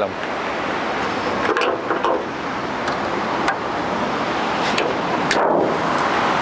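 Steady rush of road traffic, swelling as a vehicle passes near the end, with a few light clicks and knocks as the car's bonnet is lowered and shut.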